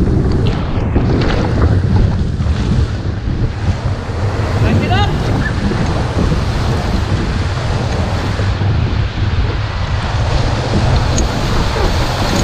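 Whitewater rapid rushing loudly around a raft, with water splashing over the boat and onto the camera microphone. A few short shouts from the crew rise above it about five seconds in.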